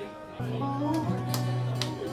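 Live guitar coming in about half a second in, after a short lull, and playing held chords.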